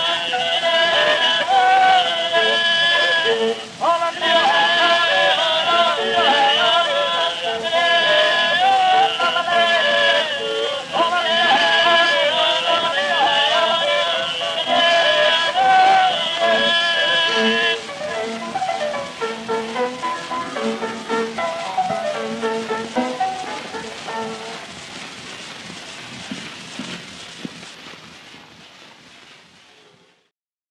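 Early acoustic music recording: a whistler's high, warbling bird-like melody over instrumental accompaniment, with the hiss of an old record surface. The whistling stops about 18 seconds in, and the accompaniment plays on, fading away toward the end.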